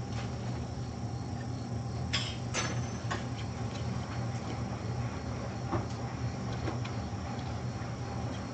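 A steady low electrical hum fills the room, with a few light clicks and knocks: two about two seconds in and another near six seconds.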